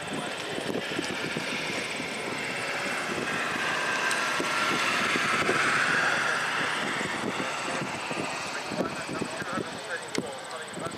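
Horse trotting on sand footing, its hoofbeats coming as repeated soft thuds. A louder rushing noise from something passing by covers them, swelling to its loudest about six seconds in and then fading.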